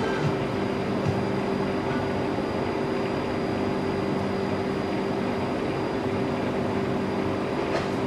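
A steady mechanical hum over a constant background noise, holding level and pitch throughout.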